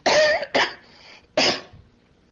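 A person coughing three times in quick succession.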